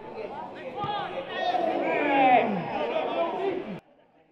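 Several footballers' voices shouting and calling to each other during play, overlapping, with the loudest call a little after two seconds in; the sound cuts off abruptly near the end.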